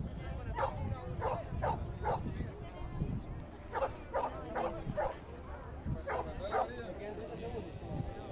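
A dog barking repeatedly in short barks: a run of about four, a pause, then about six more, over a steady low rumble.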